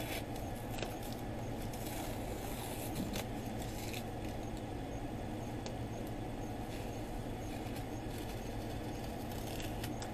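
Air conditioner and electric fan running with a steady whoosh of moving air, with a few faint clicks.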